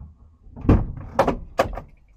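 Three sharp knocks with a low thud, about half a second apart, on a panel van's open driver's door and cab bodywork, heard from inside the cab.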